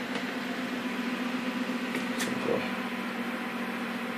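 Steady hum of a running video projector's cooling fan, an even whir with a low steady tone under it, and a faint click about two seconds in.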